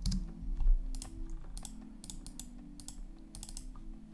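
Typing on a computer keyboard: a quick, irregular run of keystrokes while entering node names.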